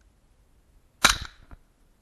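A single rifle shot from an IWI Tavor firing a .223 round: one sharp, loud crack about a second in with a short ring-out, followed by a fainter crack about half a second later.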